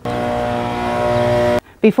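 Motorhome's basement air-conditioning unit, switched on while broken, giving a loud, steady hum over a hiss that cuts off suddenly about one and a half seconds in.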